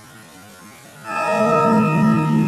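A low, murky rumble, then about a second in a loud, wavering, eerie drone with many overtones cuts in and holds, pulsing slightly at the bottom: distorted, slowed-down logo soundtrack audio.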